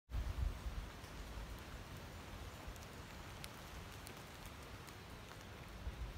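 Faint patter of water drops: a steady hiss with scattered single drip clicks. A low rumble is loudest in the first second.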